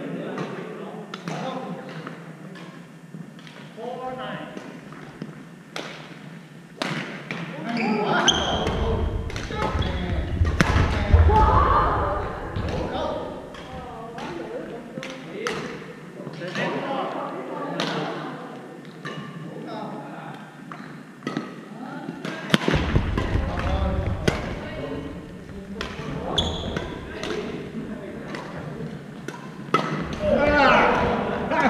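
Badminton play in a large gym: many sharp racket strikes on the shuttlecock and thuds of footsteps on the wooden court, with voices echoing in the hall.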